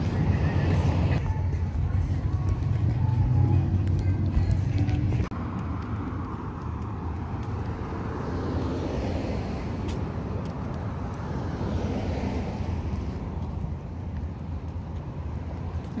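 Street traffic: a low rumble for about the first five seconds that cuts off suddenly, then the hiss of cars going by, swelling and fading a couple of times.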